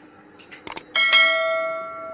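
A few short clicks, then a single bright bell ding about a second in that rings on and fades away: the mouse-click and notification-bell sound effect of an on-screen subscribe-button animation.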